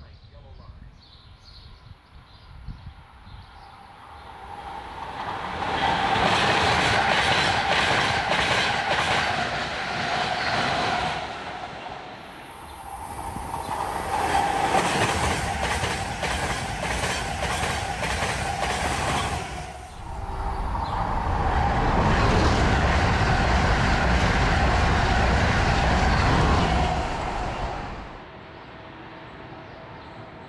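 An Amtrak Acela high-speed electric trainset passes close by at speed: loud rushing wheel and air noise with rapid clickety-clack over the rails. It builds about four seconds in, lasts over twenty seconds, changes abruptly twice, and falls away near the end. A thin high whine runs through the middle stretch.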